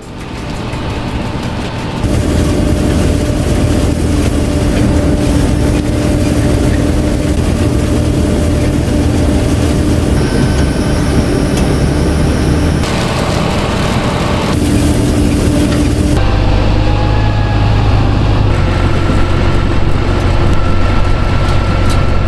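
Potato-harvesting machinery running: tractor and self-propelled harvester engines with the clatter of the harvester's conveyors. The sound changes abruptly several times as the footage cuts between machines.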